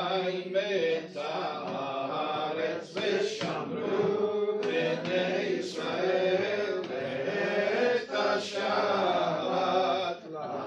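Male voices chanting a Hebrew prayer to a sung melody in long phrases, with short breaks for breath between them.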